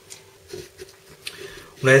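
Faint, light taps and scrapes of ceramic kitchen bowls being handled, a few scattered ticks in an otherwise quiet room, followed near the end by a man starting to speak.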